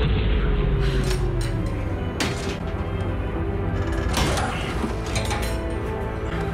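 Tense dramatic underscore from a TV drama's soundtrack: low sustained tones with a note sliding slowly downward, broken by two sharp mechanical clicks about two and four seconds in.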